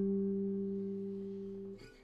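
Background music: one held chord slowly dying away, stopping just before the end.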